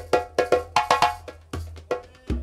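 Solo drum struck by hand: a quick, uneven run of sharp ringing strokes, about five or six a second.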